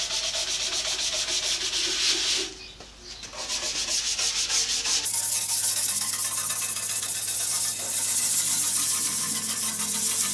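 Scrub brush scrubbing the rust off a cast iron bandsaw table wet with Boeshield rust remover, a fast back-and-forth rasping. It eases off briefly about two and a half seconds in, then carries on.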